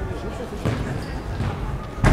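A football struck once with a sharp thud on the floor of an indoor sports hall, with people talking in the background.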